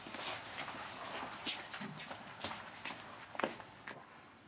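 Soft, irregular light taps and rustling, with a few sharper clicks near the end.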